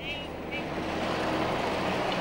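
City street traffic: a motor vehicle going by, its engine hum and road noise swelling over the first second and then holding steady.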